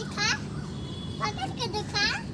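A young child's high-pitched voice, two short wordless vocal sounds, one just after the start and one in the second half, over steady low outdoor background noise.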